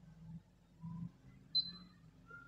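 A digital lensometer gives one short, high electronic beep about one and a half seconds in, as the lens reading is centred on its optical centre. Faint handling knocks come before it.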